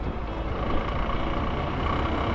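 Steady road noise from a motorcycle moving through city traffic: the bike's engine running under wind noise on the microphone, with no sudden events.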